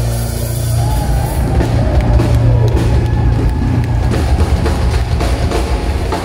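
Live pop-rock band playing through a PA: drum kit beating a steady rhythm over a strong electric bass, with keyboard, guitar and cello.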